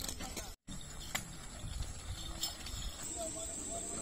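A bullock cart drawn by a pair of bullocks moving along a muddy track: a steady low rumble of hooves and cart with a few light knocks. A wavering call or voice is heard faintly near the end.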